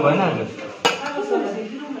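Metal serving spoons clinking against stainless steel pots and plates, with one sharp, ringing clink a little under a second in, over people talking.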